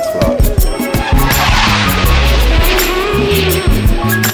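Background music with a steady drum beat and bass line. A rushing, hissing noise swells up through the middle and fades near the end.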